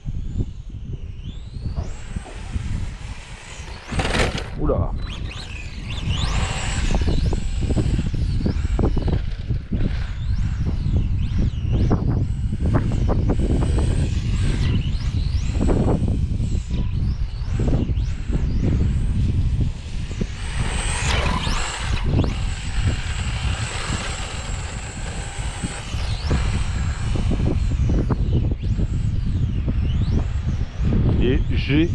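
Brushless electric motor of a Team Associated Apex2 Hoonitruck RC car whining, its pitch rising and falling over and over as the throttle is worked. Heavy wind rumble on the microphone runs underneath.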